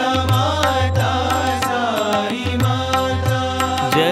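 Devotional Hindu bhajan music: a sung melody over a held drone, with a low drum beat about twice a second and sharp percussion strikes.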